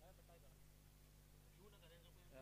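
Near silence, with faint distant voices calling near the start and again near the end.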